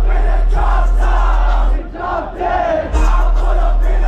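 Live hip-hop show heard from inside a packed crowd: loud deep bass from the stage PA with the crowd shouting and chanting along. The bass drops out briefly about two seconds in, then comes back.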